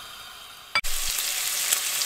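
Thin strips of speck frying in oil in a nonstick pan, sizzling as they turn crisp. The sizzle is faint at first, then after a sharp click under a second in it comes in much louder and steady.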